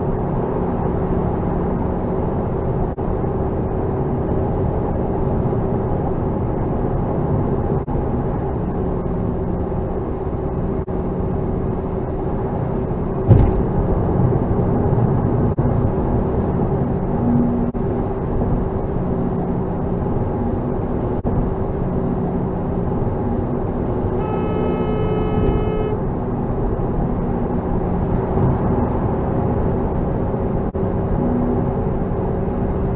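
Steady car engine and tyre noise heard inside the cabin while driving on a highway, with a single sharp knock about 13 seconds in. Later a horn sounds once for about two seconds.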